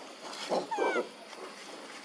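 Macaque calls: two short rough calls about half a second in, with a thin squeal that slides down in pitch over them.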